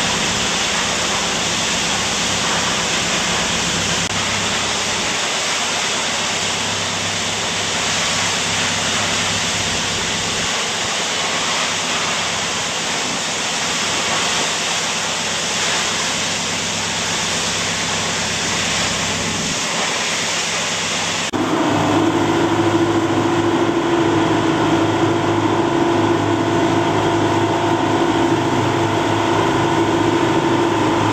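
A waterfall's steady, loud rush of falling water and spray, heard close up. About two-thirds of the way through it cuts abruptly to a boat's engine running with a steady hum over the wash of water.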